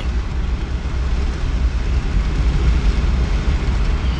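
Steady low rumble of driving noise inside a moving vehicle's cabin.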